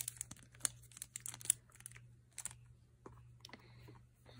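Scattered light clicks, taps and rustles of hands handling a makeup brush and a plasticky cosmetic pouch, busiest in the first two and a half seconds and then thinning out.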